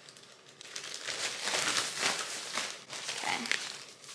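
Plastic mailer bag crinkling in irregular rustles as it is opened and handled and a garment is pulled out of it.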